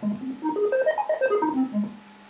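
MIDI notes from an Arduino-powered 14-note laser harp as a hand sweeps across its beams: a fast run of about fifteen notes that climbs in wide steps and then comes back down, played on an arpeggio setting.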